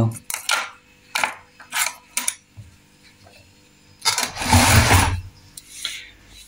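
Metal cutlery clinking and knocking in an open kitchen drawer as it is handled, in several short strokes. A longer, louder scraping noise comes about four seconds in.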